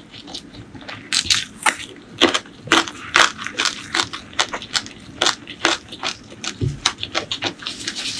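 A person chewing crunchy food close to the microphone, with mouth closed: a steady run of crisp crunches, about three a second, softer in the first second.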